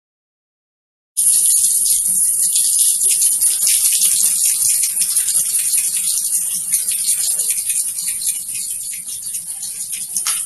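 Long slinky spring rattling and scraping across a tile floor as one end is shaken back and forth rapidly to make high-frequency waves. It is a dense, high jingle of tiny clicks that starts suddenly about a second in and eases slightly toward the end.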